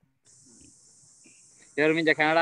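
A faint, steady, high-pitched hiss on the call audio, then a man's voice comes in loudly near the end.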